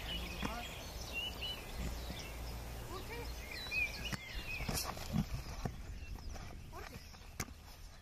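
Outdoor field sound from rugby tackle practice: distant voices and a few sharp knocks, with short high chirps over a low rumble of wind.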